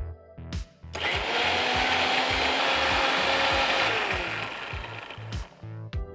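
Electric mixer-grinder spinning up about a second in, its motor running loud and steady for about three seconds while it grinds a wet tomato paste. Its pitch then falls as it winds down and stops.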